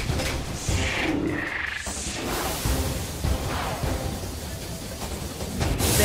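Cartoon battle sound effects of spinning tops: several short whooshes and a few sharp hits over a steady low rumble, with background music.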